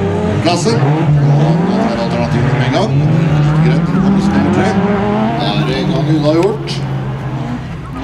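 Several Supernasjonal rallycross cars over 2400 cc racing, their engines revving up and down through the gears. The sound is loud until about six and a half seconds in, then fades as the cars move away.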